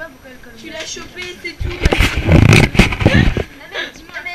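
Group chatter at a table, broken midway by about two seconds of loud, low rumbling noise: handling noise from the camera being moved.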